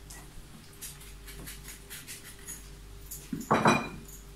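A bowl of icing sugar being tipped into a Thermomix jug: faint light taps of dishware, then a short, louder clatter near the end.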